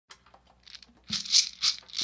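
Light percussion playing a short lead-in: faint scattered ticks, then a few hissing, rattling strokes about four a second in the second half.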